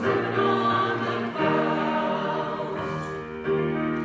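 Church choir singing a gospel song in held notes that change every second or so.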